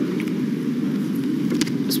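Steady low murmur of background chatter from many people in a large hall, with no single voice standing out.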